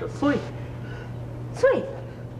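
Speech: a voice speaking a few words of Mandarin dialogue in two short bursts with falling pitch, over a steady low hum.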